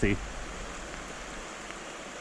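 Steady rush of a fast-flowing creek, an even hiss of moving water.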